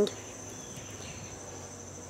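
Steady, high-pitched insect chorus of crickets or similar night-singing insects in the background.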